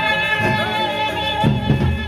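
Gendang beleq ensemble playing music with a held melodic line. Heavy drum strokes come in at a quick regular beat about three quarters of the way through.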